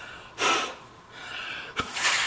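A puff of breath blown through a homemade PVC one-way ball valve to test it: a sharp puff about half a second in, then a softer airy hiss, with a small click near the end.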